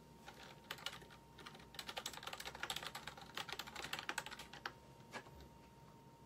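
Typing on a keyboard: quick, irregular key clicks, several a second, that stop about five seconds in.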